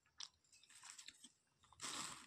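Faint crunching of small raw fruits being chewed, with short clicks, and a denser rustle near the end as the fruits are handled in a plastic bag.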